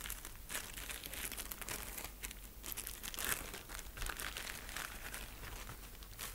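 Clear plastic sleeve and paper print crinkling and rustling as the sheet is handled and slid out of the sleeve, in a faint, irregular run of crackles.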